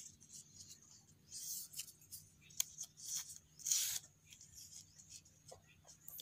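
Strips of fresh coconut leaf rubbing and rustling against each other as they are bent and threaded through a woven knot, in a few short bursts, the loudest near four seconds in, with small clicks between.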